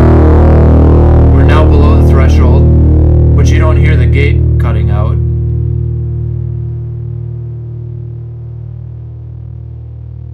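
Heavily distorted electric guitar chord from a Stratocaster's bridge single-coil pickup, ringing and slowly fading over several seconds, then holding at a steady low buzz. With the downward expander at its lowest ratio, too much of the pickup noise leaks through.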